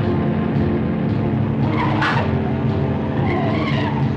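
Car engines running hard with tyres squealing about halfway through and again near the end.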